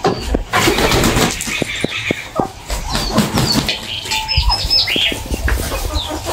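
Small birds chirping in short, high, repeated calls over a busy outdoor background with scattered clicks and knocks.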